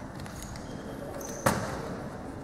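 A basketball bounces once on the hardwood court about one and a half seconds in, a single sharp thud that rings briefly in the hall, over a low murmur of voices.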